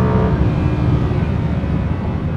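Audi R8 V10 Plus's naturally aspirated V10 heard from inside the cabin, holding a steady high-revving note that fades out about half a second in. After that only a low engine and road rumble is left.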